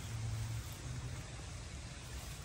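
Steady low outdoor background hum with a faint even hiss, slightly louder for the first half-second or so; no distinct event stands out.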